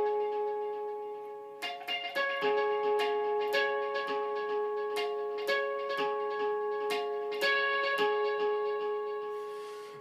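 Squier Stratocaster electric guitar playing ringing natural harmonics, picked in a repeating pattern. Each note rings on and overlaps the next.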